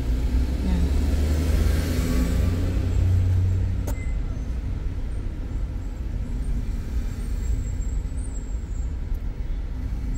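Low engine and traffic rumble heard from inside a car's cabin while it sits in slow city traffic. The rumble swells over the first three seconds or so, then settles. A single sharp click comes about four seconds in.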